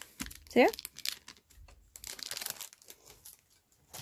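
Clear plastic packet of mechanical pencils crinkling as hands handle it, in a few short rustles.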